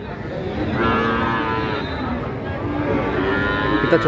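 Cattle mooing at close range: long, drawn-out calls beginning about a second in, one after another, over the background noise of a crowded livestock market.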